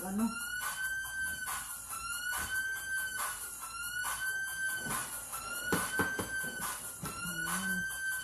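Cheese being grated on a box grater in quick repeated scraping strokes. Under it, a steady siren-like electronic warble rises and falls about once every three-quarters of a second.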